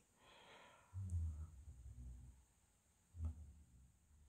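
Mostly quiet: a faint breath-like exhale at the start, then a few soft, dull low thumps about a second in and again just after three seconds.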